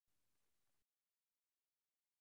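Near silence: a pause in a video-call presentation, with only a very faint hiss in the first second before the audio drops to nothing.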